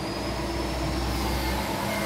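A motor vehicle's engine running nearby: a steady mechanical noise with a low rumble that drops away near the end and a faint high whine.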